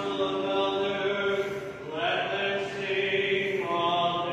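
Church congregation singing slowly, with long held notes that change pitch about every two seconds.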